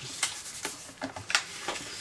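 Soft rubbing and light dabbing of a talcum powder container over a sheet of watercolour card, used as an anti-static treatment to lift fingerprints before heat embossing, with a few small taps and paper-handling sounds.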